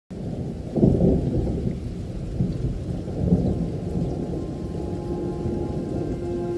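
Thunder: a loud clap about a second in, then continuing low rumbling. Music begins to come in near the end.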